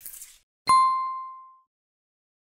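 Logo sound effect: a soft whoosh, then a single bright bell-like ding that rings out and fades over about a second.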